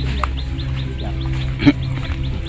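A bird's rapid series of short, high, falling chirps, about five or six a second, over a steady low hum, with one brief louder sound near the end.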